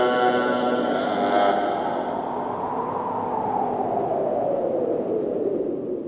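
Production-logo sound sting: a sudden, sustained chord-like tone fades over the first couple of seconds, then a noisy whoosh with a slowly falling pitch runs on and cuts off just after the end.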